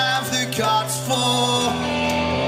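Live rock band playing: a man singing over electric guitar, with chords held under the vocal line.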